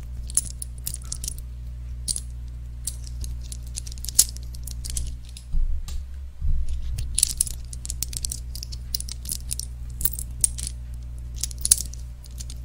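Fingernails tapping and clicking on the metal body of a condenser microphone, in quick, irregular runs of sharp clicks. There are a couple of low thumps about halfway through as the microphone is gripped and handled, all over a steady low hum.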